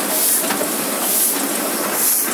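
Sheet-fed offset printing press running: a loud, steady mechanical clatter and hiss, with the hiss swelling about once a second.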